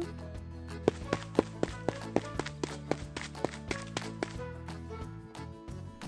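Light background music with a quick run of sharp taps, about five a second, that stops a little after four seconds in.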